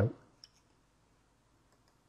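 A single faint computer mouse click about half a second in.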